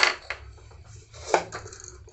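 Hollow dried calabash gourds knocked lightly against a tabletop as they are set down: a sharp knock at the start, then a couple of softer ones.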